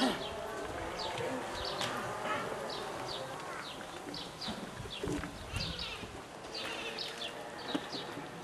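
Small birds chirping: short, high chirps that fall in pitch, one or two a second, over a faint murmur of people. A single knock comes right at the start.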